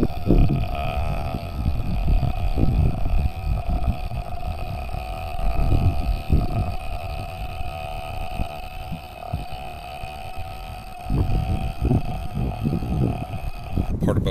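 Low, uneven rumbling with a steady machine hum underneath.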